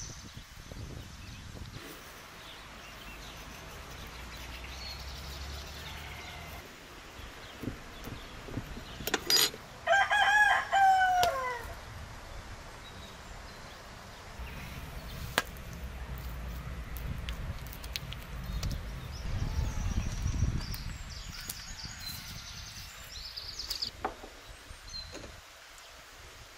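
A rooster crows once, a loud cock-a-doodle-doo of about two and a half seconds ending in falling notes, about nine seconds in. Around it there is a low rumble and, near the end, faint high chirps.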